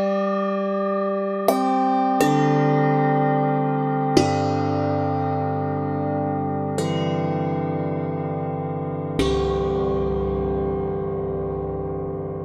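Sampled low handbells (clapper articulation) from the Bolder Sounds Handbells V2 sample library, played slowly: five notes struck one after another, a second or two apart, each ringing on long and overlapping the earlier ones as they slowly die away.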